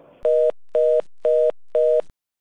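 Telephone busy tone after the other party hangs up: four short, even beeps of two steady tones sounded together, about two a second.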